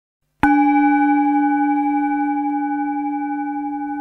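A single struck bell about half a second in, ringing on with a deep tone and high overtones and fading slowly.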